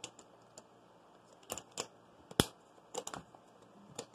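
Rubber bands being stretched and wrapped around a plastic water bottle's cap: about half a dozen sharp clicks and taps of the bands and plastic, the loudest a little past the middle.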